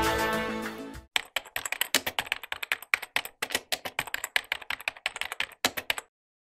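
Theme music fading out in the first second, then a computer-keyboard typing sound effect: a fast, irregular run of keystroke clicks for about five seconds.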